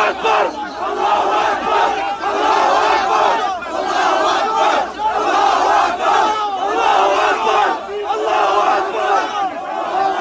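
A crowd of people shouting and yelling over one another, loud and continuous, with no steady chant rhythm.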